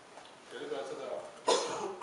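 A man coughs once, a sudden loud cough about one and a half seconds in, preceded by faint voice sounds.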